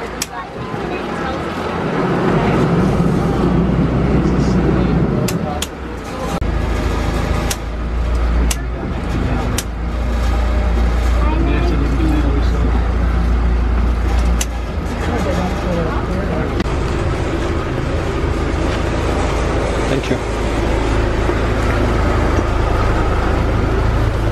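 Engine of a small wooden motor launch running under way across open water: a steady low rumble that grows louder about two seconds in as the boat pulls away from the dock, with a few sharp clicks, and voices under the engine noise.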